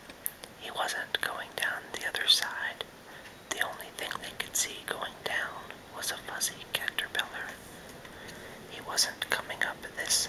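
A man whispering, reading a story aloud in phrases, with two short pauses.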